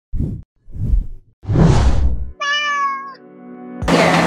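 Opening sound sting: three short bursts of noise, then a single cat meow about two and a half seconds in, over a held musical chord that fades away.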